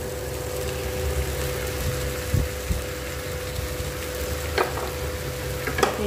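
Potato cubes, tomato and green chillies sizzling in oil in a nonstick frying pan as soaked sago pearls are tipped in on top, with a few light clicks along the way.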